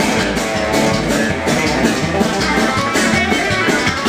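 Live hillbilly-style country band playing: a strummed acoustic guitar and an electric guitar over upright bass and drum kit, with a steady beat.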